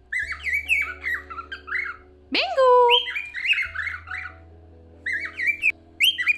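A pet cockatiel chattering and warbling in quick runs of short gliding chirps. The chirping breaks off for about a second after the middle, then resumes.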